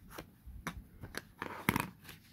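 Hands handling a crumpled, aged book page: paper rustling and crinkling in a series of short crackles, the loudest near the end.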